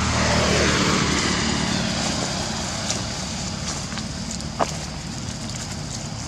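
A motor vehicle passing by, its engine note falling in pitch as it goes away and its hum fading over the next few seconds. A single short click about four and a half seconds in.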